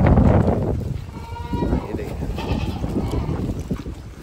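A Sojat goat bleating once, a short wavering call about a second in, after a burst of loud noise at the start.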